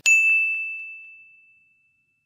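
A single bright ding sound effect: one high tone struck once at the start, fading out over about a second and a half.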